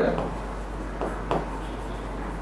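A pen writing on the screen of an interactive display board: a few soft strokes and taps, over a steady low hum.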